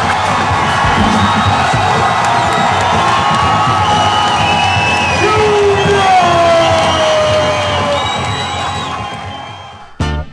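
A large crowd cheering, whooping and shouting over music with a steady beat, fading out near the end.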